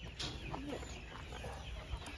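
Chickens clucking, a scattered run of short calls.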